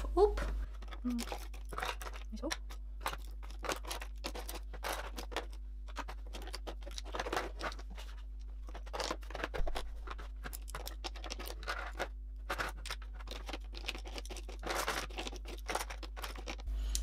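Makeup brushes and small plastic and cardboard items being picked up and set down in a drawer tray: an irregular run of light clicks, taps and rustles.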